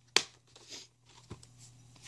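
Plastic DVD case being handled: one sharp click just after the start, faint rustling, and a softer click a little over a second later.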